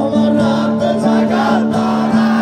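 Live rock band playing a song: sustained keyboard and electric guitar chords with singing over them.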